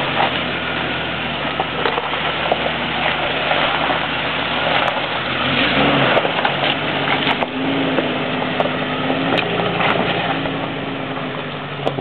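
Jeep Cherokee Sport (XJ) engine running at low revs as the SUV crawls over a rocky trail, with rocks and gravel crunching and knocking under the tyres. The revs rise briefly about six seconds in.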